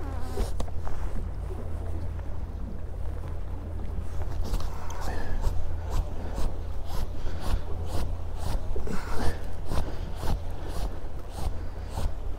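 Fishing reel being wound in against the weight of a hooked fish, with irregular clicks and knocks. Under it, a steady low wind rumble and waves slapping a small boat's hull.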